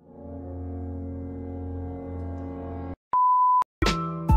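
Edited-in warning sound effects: a low droning tone with many harmonics is held for about three seconds and cuts off abruptly. After a short gap comes a single pure electronic beep lasting about half a second. Background music with struck notes comes back in just before the end.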